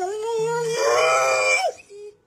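A Labrador retriever giving one long, drawn-out whining howl. It swells louder in the middle and breaks upward just before it stops, near the end.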